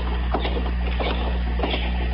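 Radio-drama sound effect of footsteps: two men walking at a steady pace, several steps a second, over the low steady hum of the old recording.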